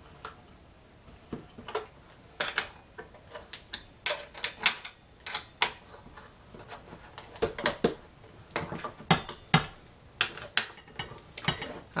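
Irregular small metallic clicks and taps of an Allen wrench turning and being re-seated in a bolt head, tightening a deflector bracket's bolts onto a brush cutter's shaft.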